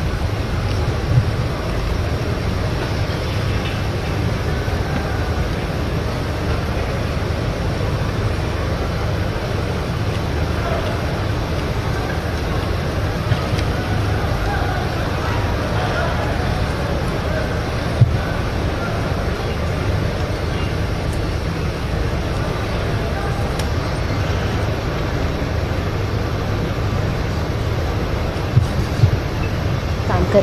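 Steady low rumble of background noise with faint, indistinct voices in it, broken by a few brief knocks, the sharpest a little past the middle.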